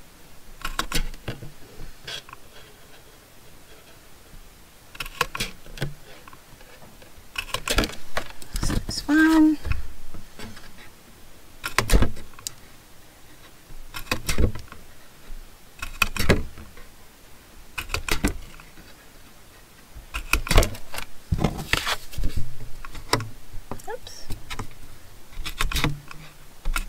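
Crop-A-Dile metal hole punch snapping 3/16-inch holes through cardstock index cards: sharp single clicks, about a dozen, one every second or two, with the card shuffled between punches.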